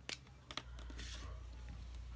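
Marker pen uncapped with two sharp clicks, the cap pulled off and set on the table, then a faint scratch of the tip on card; a steady low hum starts about half a second in and runs on.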